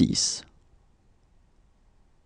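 The end of a spoken French number word, 'soixante-sept', with crisp hissing consonants in the first half-second, then faint room tone.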